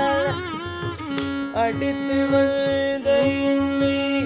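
Carnatic classical concert music: an ornamented melodic line with wavering slides that settles into long held notes, over a steady drone, with mridangam strokes keeping the rhythm.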